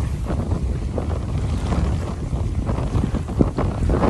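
Wind buffeting the microphone: a heavy low rumble that rises and falls unevenly with the gusts.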